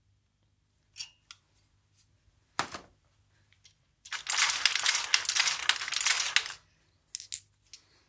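Marbles clattering in the Marble Machine X's marble drops and funnel: a few light clicks and one sharp knock, then about two and a half seconds of dense metallic rattling that stops suddenly, and two more clicks near the end.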